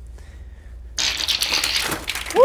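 A deck of playing cards sprung from one hand in a spray: a sudden fast flutter of many small card clicks starting about a second in and lasting about a second, as the cards hit a cardboard pastry box.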